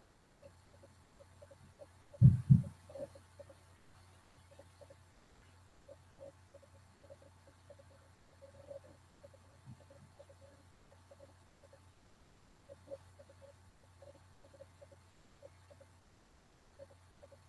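Quiet room tone with a faint steady low hum and scattered faint ticks, broken about two seconds in by a brief low double thump.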